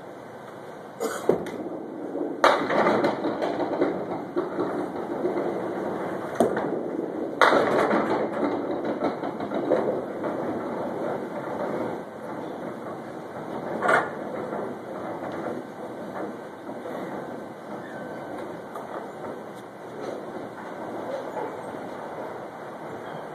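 Candlepin bowling balls and pins in a busy alley: a few hard knocks, the two loudest each followed by a few seconds of rolling rumble, over background voices.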